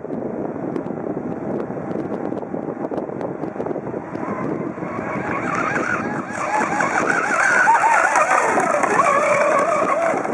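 Electric RC racing outrigger boats at full speed, the high whine of their motors and propellers wavering up and down in pitch as the hulls hop over choppy water. The whine rises out of a steady rushing noise about halfway through and is loudest as the boats pass close.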